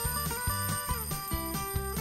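Mechanical alarm-clock bell ringing continuously as its little hammer beats the two bell cups very quickly, over background music.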